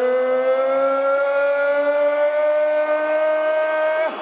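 A boxing ring announcer's voice drawing out the fighter's name 'Ortiz' in one long, loud held call, its pitch slowly rising.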